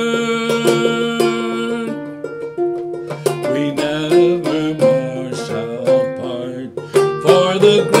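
Goldtone banjo with a natural John Balch head, Dobson tone ring and nylgut strings, played clawhammer-style in a lilting 6/8 as an instrumental passage between sung lines. There are distinct plucked notes with a warm, plunky ring, and a held sung note ends about two seconds in.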